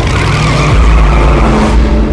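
A vintage racing car going past at full speed, its engine and skidding tyres making a sudden loud rush of noise that thins out near the end.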